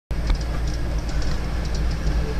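Minibus running on the road, heard from inside the cabin: a steady low rumble of engine and road noise with a few light clicks.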